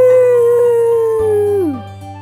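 A child's voice imitating a wolf howl: one long 'awoo' that holds its pitch, drifts slowly lower, then slides down and fades near the end, over light background music.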